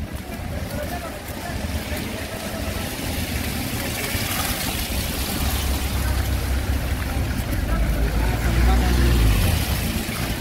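Street traffic: vehicle engines running, with a low rumble that grows louder over the last few seconds as a vehicle comes close, and voices in the background.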